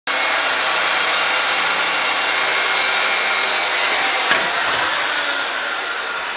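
Handheld circular saw cutting through a wooden board, a steady loud whine and rasp of the blade in the wood. About four seconds in the cut ends and the motor winds down.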